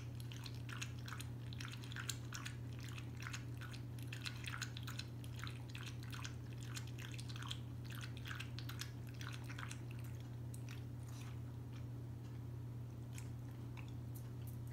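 A small dog lapping water from a stainless steel bowl, a quick run of wet laps about three or four a second that thins out near the end.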